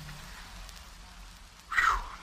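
Steady low hiss of an old radio-show recording, then a short breathy burst, like an exhale, near the end.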